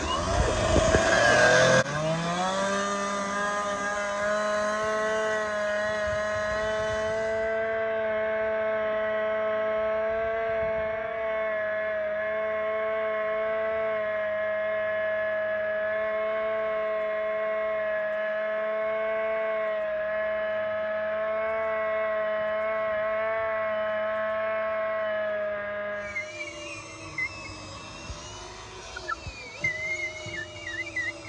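Two-stroke chainsaw cutting the tops off wooden pilings to level them: it revs hard in the first two seconds, then runs at a steady high pitch at full throttle for over twenty seconds, and drops away about four seconds before the end.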